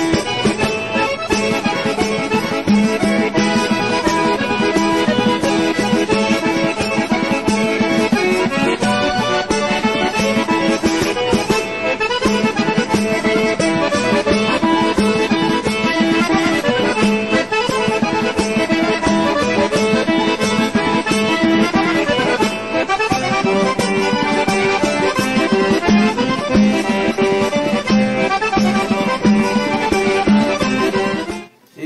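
Background music: traditional folk music led by an accordion.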